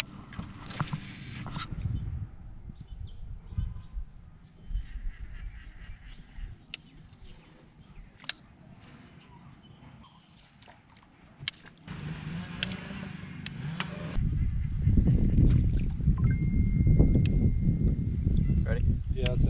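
Low wind rumble on the microphone, getting much louder about two-thirds of the way through, with scattered sharp clicks from the fishing tackle being handled.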